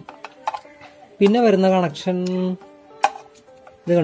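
A few light clicks and taps of a screwdriver tip on the plastic contactor of a direct-on-line motor starter, the sharpest about three seconds in. A man's voice draws out a vowel in the middle.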